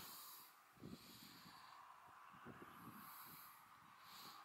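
Near silence: faint outdoor background with a soft low sound about a second in.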